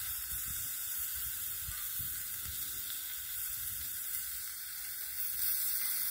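Zucchini and eggplant slices sizzling on a hot steel griddle over an open fire: a steady hiss, with a low, uneven rumble underneath.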